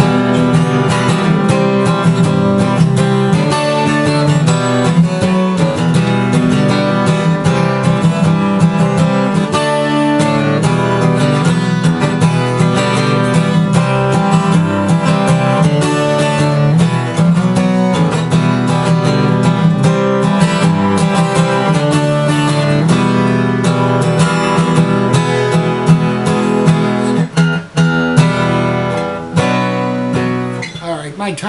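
Twelve-string acoustic guitar strummed through a chord progression, from C and G root notes into E minor and an open E9 shape. The playing runs on steadily, with a brief break near the end.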